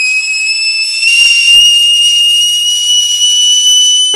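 A loud, high-pitched cartoon whistle sound effect, one unbroken tone that creeps slowly upward in pitch and stops at the end.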